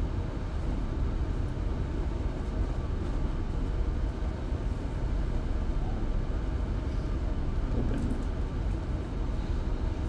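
Steady low background rumble of classroom room noise, with a few faint ticks about seven and eight seconds in.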